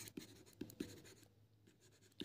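Faint taps and scratches of a stylus writing by hand on a tablet screen: a few soft ticks in the first second, then near silence.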